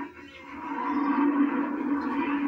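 A man's voice holding one long, drawn-out note that swells in about half a second in and carries on steadily, heard through a television's speaker.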